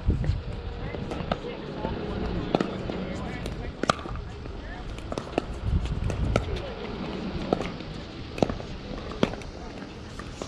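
Pickleball paddles striking a hard plastic ball in a rally: a series of sharp, hollow pops, about one a second through the second half.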